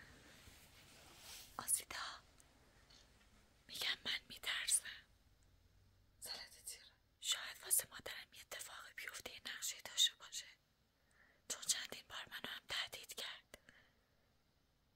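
A woman whispering in short phrases with brief pauses between them.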